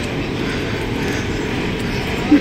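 Shopping trolley wheels rolling over a hard floor: a steady rolling rumble.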